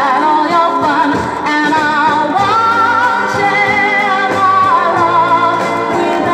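1960s pop song with a female lead vocal over a full band backing; in the middle the singer holds a long, wavering note.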